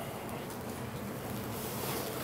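Steady sizzling hiss of a thick steak searing on a gas grill's grates, getting slightly louder toward the end as fat flares up in the flames.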